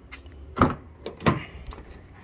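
Toyota Hilux cab door being opened: two sharp clunks from the handle and latch a little under a second apart, then a light click.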